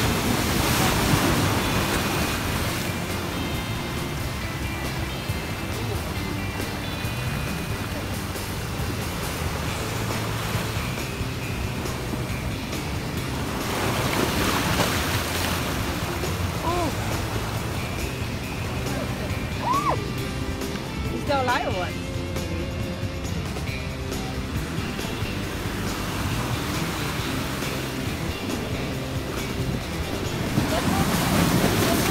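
Ocean surf breaking against rocks, swelling in a surge every thirteen seconds or so, with background music playing over it.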